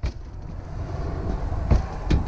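Steady low rumble of handling and wind noise on a hand-held camera's microphone, with one sharp knock near the end, typical of a footstep on a trailer's entry step.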